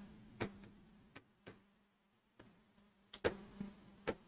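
Pen writing on a board: a few faint, short ticks and taps of the pen tip on the surface, bunched together near the end, over a faint steady hum.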